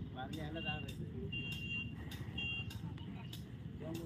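Muffled voices in the background over a steady low rumble, with faint regular ticks about every half second and two short high tones in the middle.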